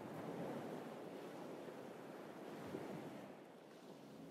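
Small sea waves washing onto a sand and pebble beach: a quiet, steady surf wash without a break, easing slightly near the end.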